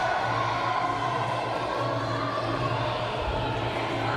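Indoor sports-hall ambience: a steady murmur of crowd noise with faint music underneath and a constant low hum.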